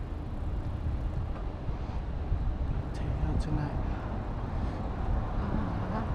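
Steady low rumble of a city street: wind buffeting the microphone and road traffic. A man's voice comes in briefly a little after halfway and again near the end.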